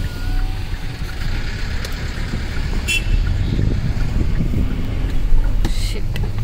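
Car-cabin noise from a car driving slowly over a rough dirt track: a steady low rumble of tyres and suspension, with a brief clatter about halfway through.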